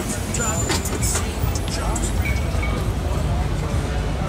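Busy downtown street ambience: a steady low rumble of traffic, with people talking and music mixed in, and a few sharp clicks in the first second or so.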